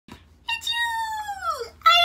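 Dachshund howling: one long howl that falls steadily in pitch, with a second call starting near the end.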